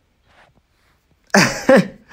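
A person's brief breathy vocal outburst: two sharp bursts of voice about two-thirds of the way in, after a quiet stretch.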